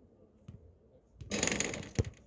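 A faint thud about half a second in, then a loud scraping rustle lasting about half a second near the end, closing on a sharp click, during play on an outdoor basketball court.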